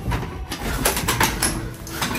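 A wooden door with a metal lever handle being rattled: about four sharp knocks in quick succession through the middle.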